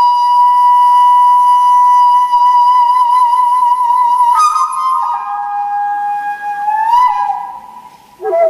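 Flute music of slow, long-held notes with a slight waver: one note held for about four seconds, a brief higher note, then a lower note that slides upward near the end before the sound fades.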